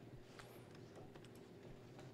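Near silence: a steady low room hum with faint, scattered clicks of laptop keys.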